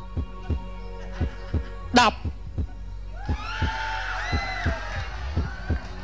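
Suspense music bed built on a steady low heartbeat-style pulse, about three beats a second. A short loud vocal exclamation cuts in about two seconds in, and a sustained synth chord swells in from about three seconds.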